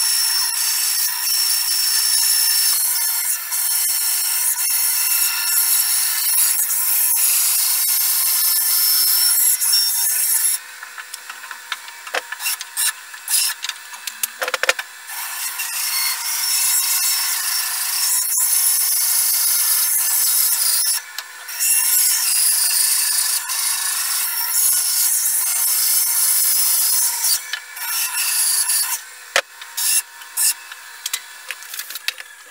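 HAIS band saw cutting a block of wood: a loud, steady high hiss of the blade through the wood that breaks off for about five seconds a third of the way in, briefly again later, and once more near the end. A few sharp knocks sound in the first break, and a faint steady hum runs underneath throughout.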